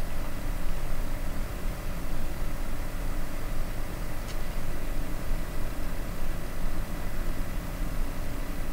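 A steady low mechanical rumble with faint steady hum tones, and one faint click about four seconds in.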